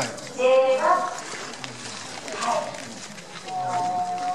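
Speech: a woman talking in short phrases over a microphone and PA.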